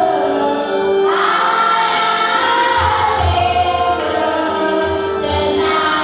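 A group of mainly women's voices sings a Christian song together, over held accompaniment notes and a steady beat of about one stroke a second.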